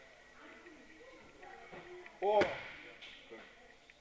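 A body landing on a judo training mat after a throw: one sharp slap of the fall about two and a half seconds in, the loudest sound here.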